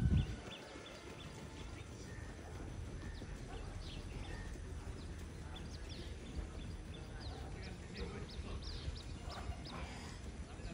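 Faint footfalls of a group of runners on a dirt path, heard as scattered light ticks over steady outdoor background noise, growing more frequent near the end.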